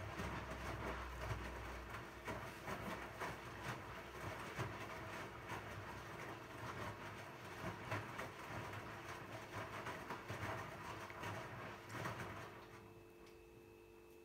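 Zanussi ZWF844B3PW front-loading washing machine tumbling a wet load of towels in its drum during the wash, with an irregular run of sloshing and small knocks. The drum stops about twelve and a half seconds in, leaving a faint steady hum.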